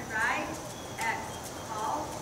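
Hoofbeats of a horse moving across a sand arena, a few soft knocks, with indistinct voices in the background.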